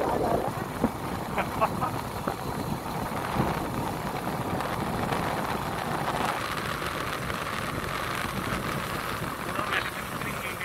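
Steady road and engine noise of a moving vehicle, heard from inside as it drives along, with a few light knocks in the first two seconds.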